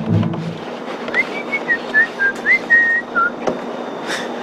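A person whistling a short tune of about nine quick notes that step up and down, over steady outdoor background noise. A low musical tail fades out in the first half second, and a single click comes near the end.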